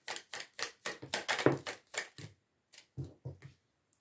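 Deck of tarot cards being shuffled by hand: a fast run of sharp card clicks for about two seconds, then a few separate snaps about three seconds in as cards come out of the deck.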